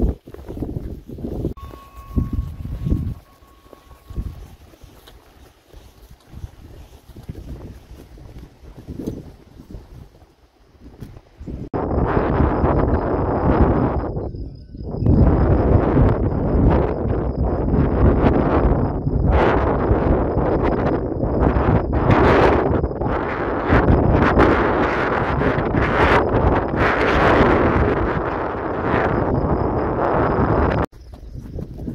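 Wind buffeting the microphone: gusty low rumble, fairly quiet with soft thumps for the first dozen seconds, then loud and continuous from about twelve seconds in.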